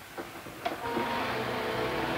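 Film projector switched on with a click, then its motor and mechanism running with a steady whir.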